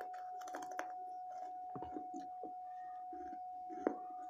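Baked clay saucer being chewed in the mouth: scattered crisp crunches at an uneven pace, the sharpest one near the end.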